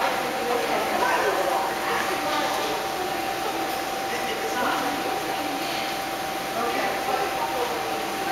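Indistinct voices of several people talking in a large indoor hall, over a steady high-pitched hum.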